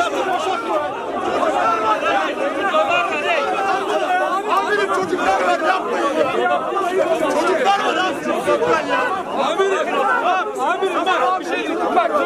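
A crowd of angry football supporters at close range, many men talking and shouting over one another without a break.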